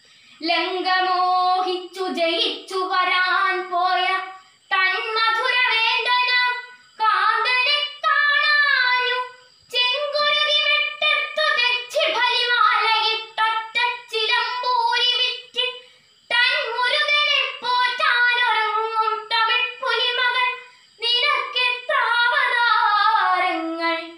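A girl chanting a Malayalam poem in a sung melody, unaccompanied, in phrases of two to three seconds with short breaks for breath between them.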